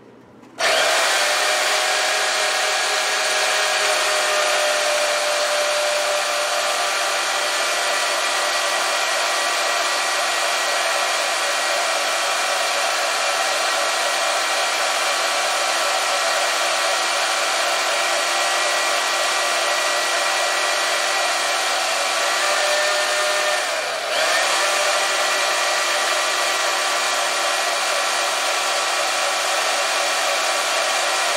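Portable band saw switched on about half a second in and running steadily with a constant whine as it cuts through a finned aluminium 66cc two-stroke engine cylinder. Late on the sound briefly dips, then picks up again.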